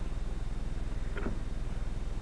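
Steady low hum of room tone, with one faint tick about a second in.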